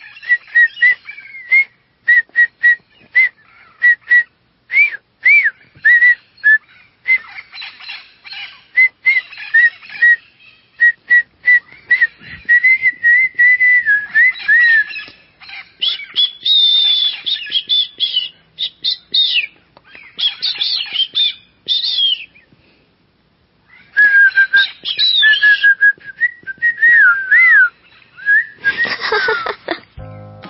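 A person whistling short birdlike chirps and trills, mostly at one pitch with quick up-and-down slides, and some higher phrases in the middle. The whistling breaks off briefly about three-quarters through, then resumes.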